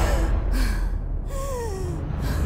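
A young woman gasping and breathing hard, ending in a breath that falls in pitch, over a deep, steady rumble.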